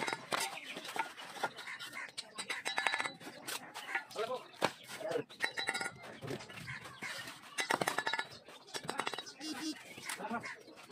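Bricklaying: a steel trowel clinking and tapping against bricks as they are bedded into mortar, many short sharp clinks, with voices in between.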